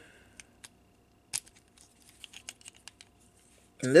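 Small clicks and taps of hard plastic action-figure parts being moved and pegged together by hand: a few scattered clicks, the loudest a little over a second in, then a quick run of faint ones.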